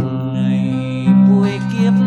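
Acoustic guitar playing a slow bolero accompaniment, with a voice singing long held notes over it.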